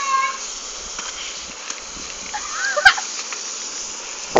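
Steady hiss of water spraying from a garden hose. About three seconds in comes one short, high-pitched squeal, followed by a click.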